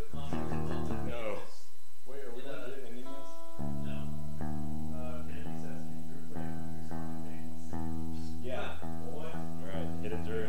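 Guitar played in single held notes that change about once a second, starting a few seconds in, with voices at the start and near the end.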